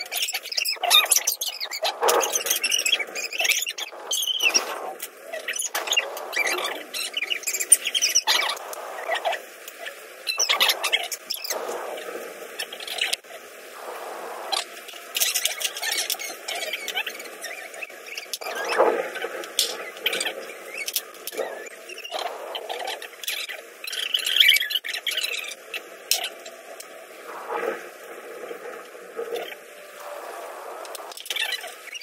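Irregular clicks, scrapes and small squeaks of hands working on a dismantled electric fan motor and its plastic and metal parts.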